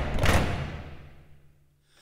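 Transition sound effect for an animated ranking title card: a sudden hit that fades away over about a second and a half, with a low hum underneath.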